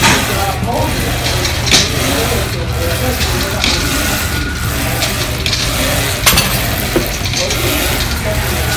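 Steady room noise of a gym, a low hum under an even hiss, with a few short clinks at irregular moments.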